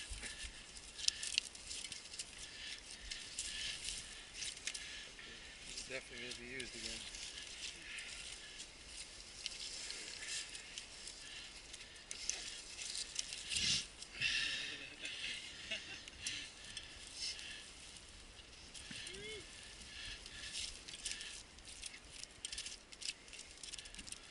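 Mud-caked mountain bike being handled and scraped clean by gloved hands: an irregular run of small clicks, scrapes and rattles, loudest in a cluster about fourteen seconds in. The bike's chain and frame are clogged with mud.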